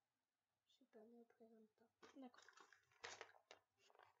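Mostly very quiet: a child speaks faintly under her breath from about a second in, too low to make out the words.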